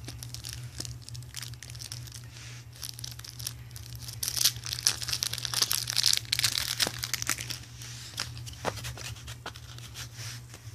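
Plastic wrapper of a trading-card deck crinkling and tearing as it is pulled open, in irregular crackles that get louder around the middle, over a steady low hum.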